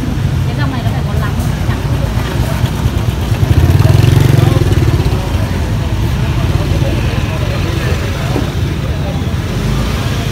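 Low motorbike engine rumble in a busy market lane, swelling about three and a half seconds in and easing off after five, under faint background chatter.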